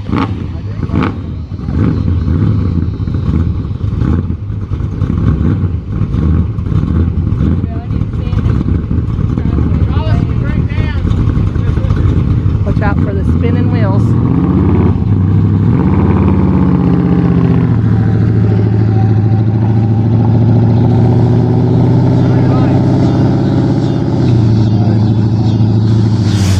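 Hot-rodded 360 cubic-inch V8 in a 1971 Plymouth Valiant, with ported heads, headers and a roller cam, idling unevenly. About a quarter of the way in it is revved up and down, then runs steadily at higher speed as the car drives off.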